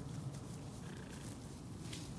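Shetland ponies grazing close by, tearing and munching grass in a steady low crunching.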